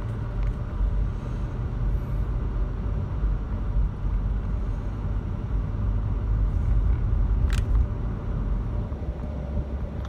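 Steady low rumble of a car driving, heard from inside the cabin: engine and tyre noise. There is one short click about seven and a half seconds in.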